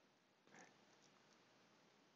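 Near silence: faint steady hiss, with one brief faint noise about half a second in and two faint ticks soon after.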